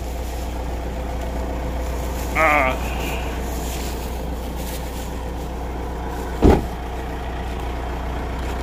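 Vehicle engine idling with a steady low hum. A short voice sounds about two and a half seconds in, and a single heavy thump comes about six and a half seconds in.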